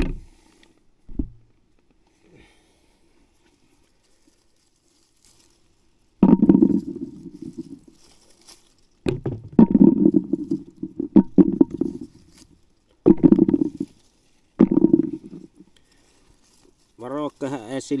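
Handfuls of redcurrants dropped into a bucket, heard from inside it: several bursts of rattling, the first about six seconds in after a quiet stretch.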